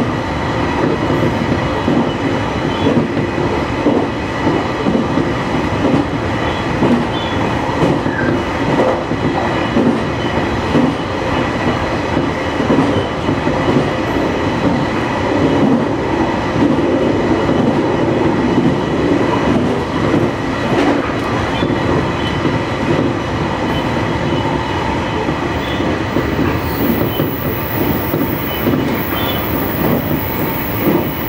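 Electric local train running at speed, heard from inside the car just behind the driver's cab: a steady rumble of steel wheels on the rails, with a few faint clicks from the track.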